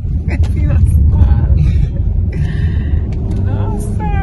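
Steady low road and engine rumble inside a moving car's cabin, with snatches of talk over it.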